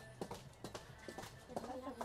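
Faint footsteps of a person in hard-soled shoes walking on a hard floor: a few light clicks about half a second apart, with faint background music and voices.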